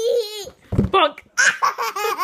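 A toddler laughing in short, high-pitched bursts of giggles and belly laughs.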